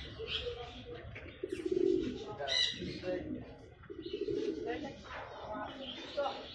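Domestic fancy pigeons cooing, with two longer low coos, one about a second and a half in and another about four seconds in, and shorter higher calls between them.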